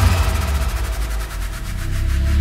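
Electronic dance music in a break: the kick drum drops out, leaving a low bass drone under a fast, rapid roll.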